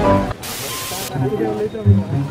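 A burst of high-pitched hiss lasting just over half a second, starting just under half a second in, right as the background music cuts off; voices follow.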